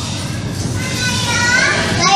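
Children's high-pitched voices calling and chattering, growing louder from about a second in as the elevator doors open onto the floor, over a low steady hum inside the car.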